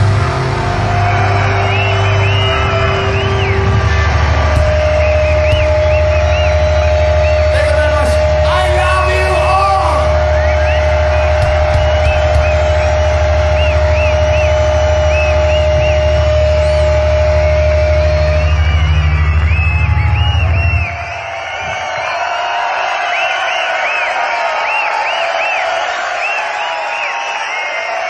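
A rock band's amplified guitars and bass ringing out in a held final chord, with one steady high feedback-like tone sustained for much of it, over a crowd yelling. The amplified drone cuts off suddenly about three quarters of the way through, leaving the crowd cheering and whistling.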